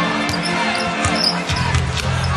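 Basketball dribbled on a hardwood court, its bounces cutting through arena crowd noise, with arena music playing underneath.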